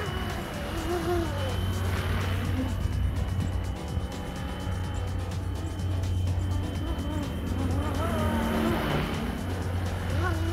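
Electric RC helicopter with Flywing Bell 206 electronics in a 3D-printed BO-105 body, hovering and drifting in flight: a steady rotor hum with a thin high motor whine, and wind rumbling on the microphone.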